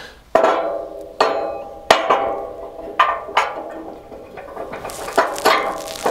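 Steel plow skid shoe and its pin knocking against the blade's mount as the shoe is moved to a new height. About eight irregular clanks, each ringing briefly.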